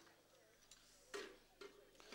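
Near silence, broken by a faint tick and two brief, faint sounds a little after a second in.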